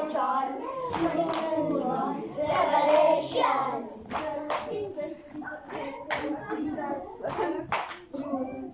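Children clapping their hands in scattered, irregular claps over a hubbub of children's voices.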